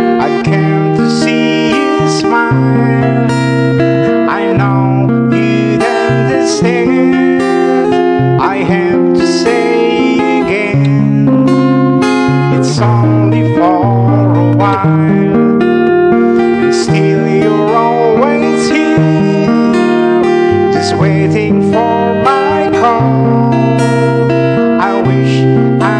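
Acoustic guitar played in chords, its bass notes and chords changing every second or two under steady picked and strummed strokes.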